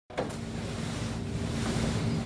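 Steady rushing noise with a faint low hum, opened by a brief click.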